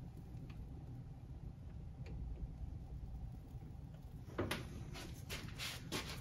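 Faint, steady low room hum. About four seconds in come several light clicks and taps as small hand tools are handled over the model track and wooden benchwork.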